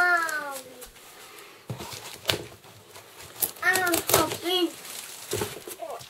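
A young child's high voice calling out at the start and again about four seconds in, with sharp crackles and clicks of broken styrofoam and cardboard packing being handled in between.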